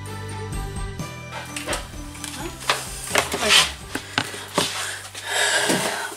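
Scissors snipping through a sheet of patterned paper, several short cuts with paper rustling between them, over steady background music.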